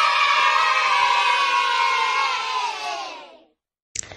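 A group of children cheering together, fading out about three and a half seconds in.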